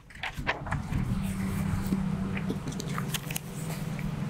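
A steady low mechanical hum, like a motor running, sets in about a second in, with crackling noise and a few sharp clicks over it.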